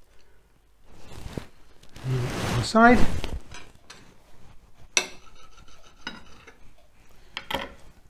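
A serrated knife sawing through a baked Cornish pasty on a china plate, a rough scraping that is loudest about two to three seconds in. Later come a sharp click of the knife or fingers on the plate at about five seconds, some light scraping, and another click near the end.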